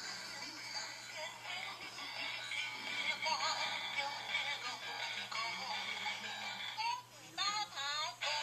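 Big Mouth Billy Bass singing-fish toy's recorded electronic singing and music, played back from a video through a tablet's small speaker, thin with no bass. The sound dips briefly about seven seconds in and then carries on.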